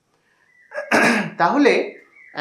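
A short burst of a man's voice after a moment of silence, with a noisy start.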